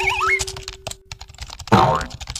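Cartoon sound effects: a rapid run of light clicks under a warbling whistle and a held tone, ending in a loud thump near the end.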